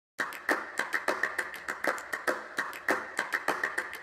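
Rapid, irregular knocks and slaps, four or five a second, from an aluminium boat's hull running over choppy water.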